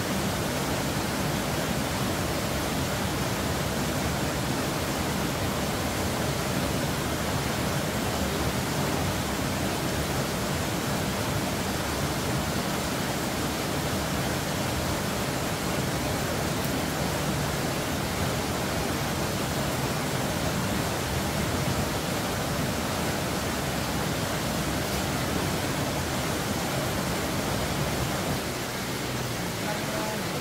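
Steady rush of flowing stream water, an even hiss with no breaks, slightly quieter near the end.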